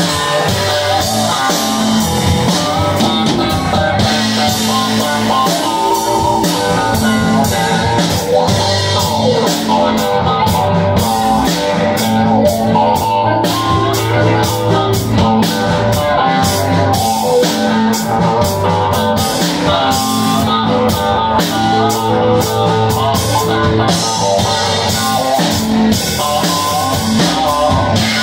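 Live rock band playing an instrumental passage: a Strat-style partscaster electric guitar over a Nord Electro keyboard and a drum kit. The cymbals keep an even beat that stands out from about ten seconds in.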